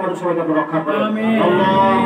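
A man's voice leading a Muslim dua prayer in a drawn-out, chanting delivery, holding one long low note for nearly a second in the second half.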